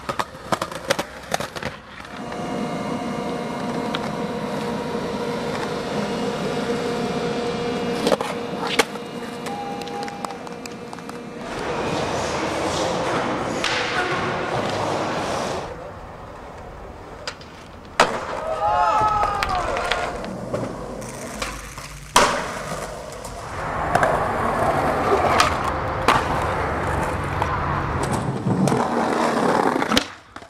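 Skateboard wheels rolling on concrete in several stretches, broken by sharp clacks of the board popping and landing, with a loud smack at about 18 seconds and another at about 22 seconds. A few brief voices call out at about 19 seconds.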